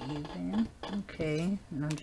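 Speech only: a woman's voice, with no words made out.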